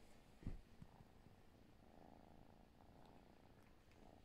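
Kitten purring faintly while suckling, with one soft low bump about half a second in.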